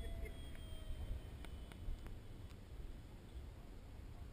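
Faint whine of a distant HobbyKing Stinger 64 electric ducted-fan jet, its pitch sliding slightly down as it fades out about a second in, over a steady low wind rumble on the microphone. A few faint clicks follow.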